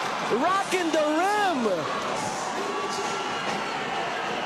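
Arena crowd cheering right after a dunk, with a long, excited drawn-out shout from a voice over it in the first two seconds.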